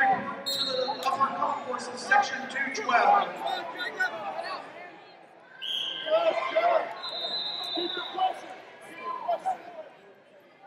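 Voices of coaches and spectators calling out in a large arena, with a few short high squeaks and sharp clicks during wrestling on the mat.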